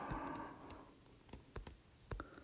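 Several light, sharp taps on an iPad's glass screen, the frozen tablet being poked at to get it responding again. A breath fades out at the start.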